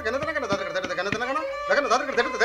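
A voice speaking or reciting in a sing-song way, with a long held note in the middle, just after the tabla has stopped playing. A few sharp strokes sound under the voice.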